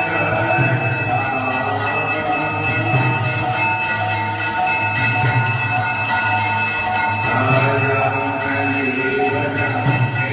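Temple bells ringing continuously for aarti, with a jingling of small cymbals, over steady devotional music.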